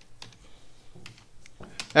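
A few scattered keystrokes on a computer keyboard, typing a line of code and pressing Enter.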